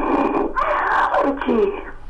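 A caller's voice coming through a noisy, muffled telephone line, repeating a greeting.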